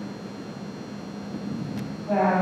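A pause in speech: steady hiss and room noise through the microphone, with a thin steady high whine and a faint click near the end.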